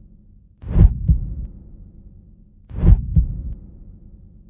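Slow heartbeat sound effect: two double thumps about two seconds apart, each a louder beat followed by a softer one, over a faint low hum.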